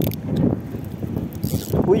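Spinning reel being cranked as a hooked fish is played on a bent rod, under wind rumble on the microphone. A short shout comes at the very end.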